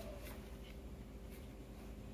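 Faint handling noise: hands rubbing and shifting on the plastic body of a jigsaw, with a few light clicks, over a low steady hum.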